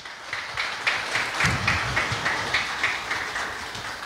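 Audience applauding, building up in the first second and slowly tapering off toward the end.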